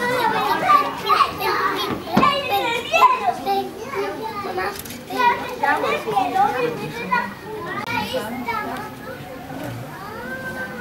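Several children talking and calling out at once, a busy babble of young voices that grows quieter after the first few seconds.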